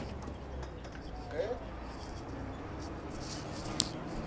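Steady low background noise with a brief faint voice about a second and a half in and a single sharp click near the end.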